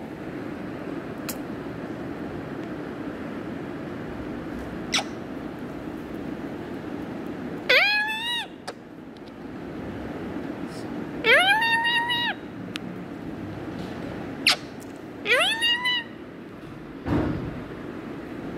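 Indian ringneck parrot giving three drawn-out calls, each rising in pitch and then holding, with a few short clicks between them over a steady low background hum.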